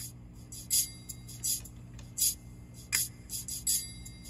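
Backing-track count-in before a gospel keyboard song: faint, sharp, cymbal-like ticks about every three-quarters of a second, five in all, over a low steady hum.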